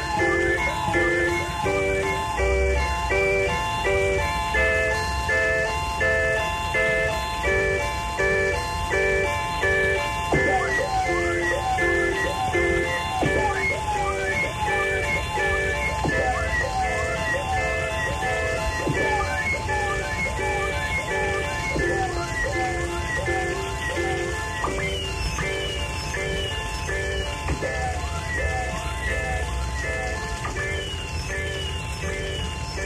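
Experimental music: a busy, repeating pattern of short, chime-like pitched notes over a low, steady hum. Near the end, short falling glides join in at the top of the notes.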